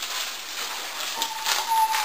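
Food sizzling in a frying pan on a stove, a steady hiss with a few light clicks. A thin whistle-like tone comes in past halfway and falls slightly in pitch.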